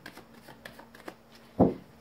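A deck of tarot cards being shuffled by hand, giving a few soft, scattered card clicks, then one loud thump about one and a half seconds in as the deck is knocked down square on the table.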